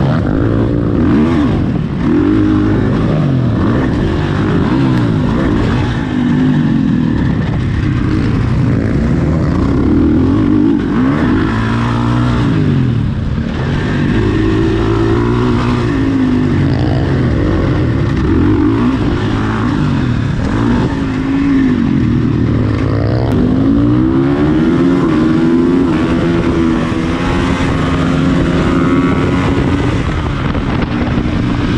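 Supermoto motorcycle engine heard onboard at race pace, its pitch rising and dropping again and again as it accelerates, shifts gear and backs off through the corners.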